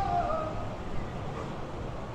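Street ambience on a windy night: wind rumbling on the microphone over the noise of approaching traffic, with faint distant music.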